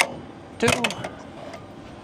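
A single sharp metallic click as a thrust reverser C-duct latch on the underside of the engine nacelle is released.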